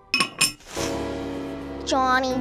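Ceramic sugar-jar lid clinking twice against the jar, followed by a held musical chord; a voice calls out near the end.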